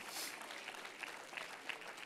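Faint, scattered applause from a congregation, a few separate claps at a time.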